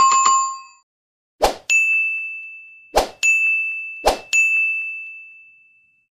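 Sound effects of a subscribe-button animation. A notification-bell ding rings at the start and fades within a second. Then come three short hits, each followed by a high ringing chime, the last fading out slowly.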